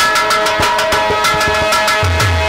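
A live folk music band strikes up: a steady held chord over quick, repeated hand-drum strokes.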